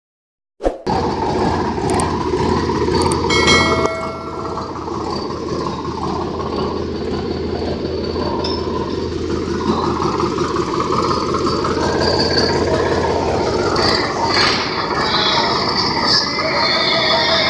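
Sonalika DI 745 III tractor's diesel engine idling steadily. A few metallic clinks and a short ringing ding come between about two and four seconds in.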